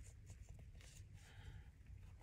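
Near silence, with faint rubbing of paper as fingers press and smooth a freshly glued book-page piece onto a journal page.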